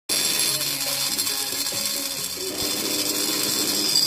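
A handmade bent flexible-shaft porting grinder running its burr against the port of a finned cylinder, giving a steady high-pitched grinding whine. Music with a simple tune plays underneath.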